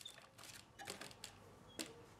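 Near silence with faint handling clicks of hands on a foam model plane, and one sharper click near the end.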